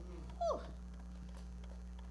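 A woman's single short exclamation, "ooh", falling in pitch about half a second in, followed by a quiet room with a low steady electrical hum.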